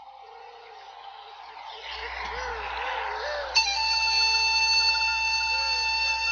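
Opening of a sad instrumental piece of music: a held tone swells in and grows louder, then about three and a half seconds in a full chord enters suddenly and holds, with a wavering melody line underneath.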